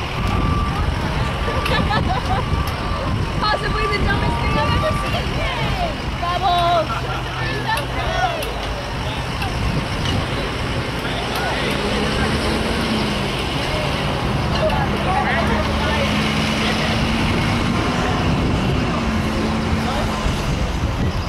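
Steady low rumble of road traffic from a nearby multi-lane road, with scattered voices of people around. A steady engine hum joins from a little past halfway.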